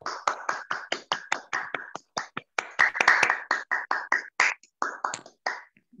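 Hand clapping in applause over a video call: a fast, uneven run of claps that stops shortly before the end.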